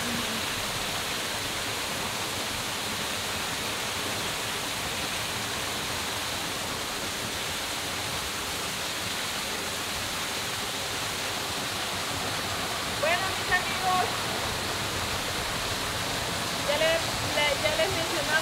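Steady, even rush of stream water spilling down a small rocky cascade into a pool. Brief voices come in about 13 seconds in and again near the end.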